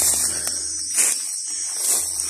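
Footsteps crunching through dry grass and leaf litter, about one step a second, over a steady high-pitched drone of insects.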